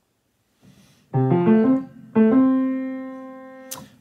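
A short piano phrase: a quick run of notes, a brief pause, then a few more notes ending on one note that is held and slowly fades. A sharp click comes just before the end.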